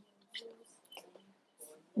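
A faint, murmured voice with a few light ticks, during a pause between spoken phrases.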